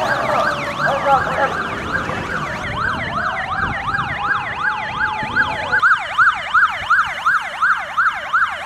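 Vehicle sirens in a fast yelp, the pitch sweeping up and down about four times a second. For a few seconds in the middle a second siren rises slowly beneath it, then drops out at about six seconds.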